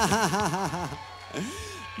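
A man laughing into a stage microphone: a quick run of "ha-ha-ha" syllables, about five a second, that dies away after about a second, then one short vocal sound.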